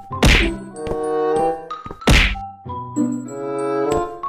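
Edited-in background music: pitched, keyboard-like notes with a heavy percussive hit twice, about two seconds apart.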